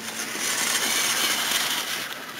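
1/6-scale radio-controlled Jeep Wrangler driving over a forest trail towards the listener, its motor and drivetrain running with a high whirring hiss that swells in the first half second and then holds steady.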